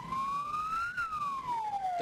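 Vehicle siren wailing: its pitch rises smoothly for about a second, then falls again, over a low rumble from the moving vehicle.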